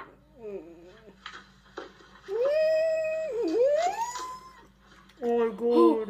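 A person's drawn-out, whining vocal cry lasting over a second, dipping in pitch and then sliding up higher, with short muffled vocal sounds near the end.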